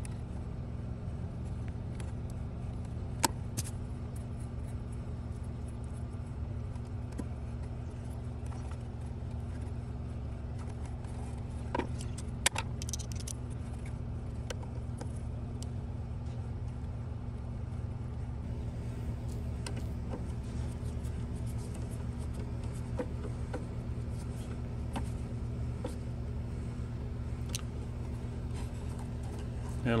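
Steady low hum, with a few sharp clicks and light metallic rattling as wire leads and a screwdriver are worked into the screw terminals of an electrical control panel: one click about three seconds in and two close together around twelve seconds.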